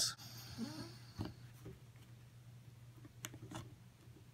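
Faint handling of a plastic bread-bag clip being worked over a leather guitar strap onto a strap button, with a few light clicks, one about a second in and two close together near the end.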